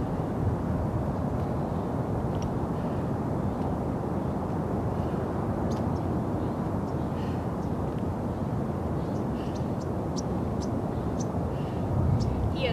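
Steady low outdoor background rumble, with a few faint short high chirps in the second half.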